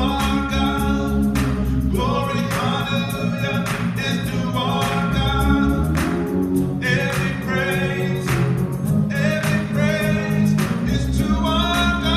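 Gospel praise song: a voice sings phrases of about two seconds each over steady, held accompaniment chords.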